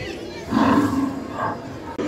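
Animatronic dinosaur's recorded roar played through its built-in loudspeaker. It starts about half a second in and lasts about a second, followed by a shorter second growl.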